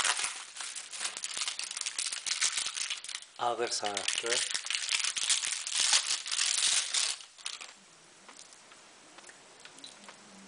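Bubble wrap and a thin plastic bag crinkling and rustling as they are pulled off a wristwatch by hand, stopping about seven seconds in.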